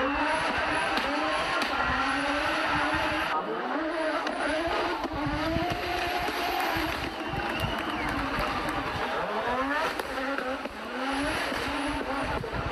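Audi Sport Quattro's turbocharged inline five-cylinder engine revving hard, its pitch climbing and dropping again and again as it is driven through the gears, with a long rising run near the end.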